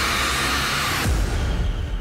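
Sound-effect sting for an on-screen verdict: a loud rushing whoosh that cuts off about a second in, followed by a deep boom that rumbles away.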